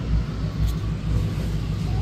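A steady low rumble with a faint even hiss above it.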